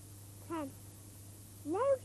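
A young child's high voice: a short falling sound about half a second in, then a drawn-out "no" near the end.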